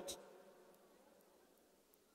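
Near silence: a man's amplified voice trails off in the first half second, leaving only a faint hum.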